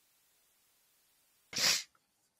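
Near silence, then a single short sneeze near the end.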